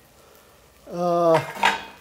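A steel cooking pot and its lid being handled with light metal clinks. About halfway in, a man's voice holds a long drawn-out sound, which is the loudest thing heard.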